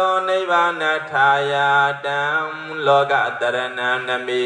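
A Buddhist monk's male voice chanting through a microphone, drawn out on long held notes that step between pitches, with short pauses for breath about one and three seconds in.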